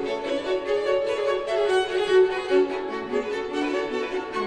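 String quartet (two violins, viola and cello) playing a minimalist piece: a dense run of quick, short bowed notes changing pitch, with no pause.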